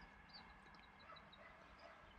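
Near silence: faint outdoor background with a few very faint, short, high chirps scattered through it.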